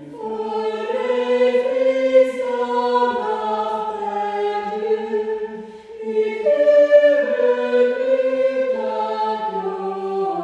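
A small choir singing in several parts, voices holding long notes and moving together from chord to chord, with a brief breath about six seconds in.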